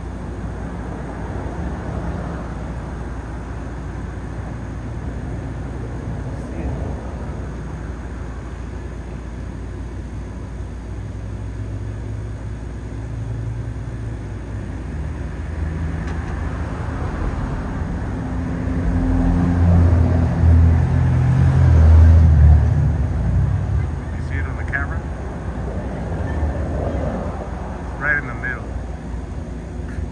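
Steady low outdoor traffic rumble, with a motor vehicle passing that swells up about two-thirds of the way through and then fades.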